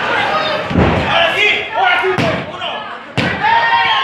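Wrestlers' bodies slamming onto a ring mat: three heavy thumps, roughly a second apart, under shouting voices from ringside.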